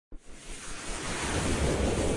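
Whoosh sound effect of an animated logo intro: a rush of noise that swells steadily louder after a short click at the very start.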